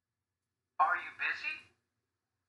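A recorded voice played back through a small speaker says one short question, 'Are you busy?', the model line of a textbook listening exercise, lasting about a second in the middle of otherwise silent air.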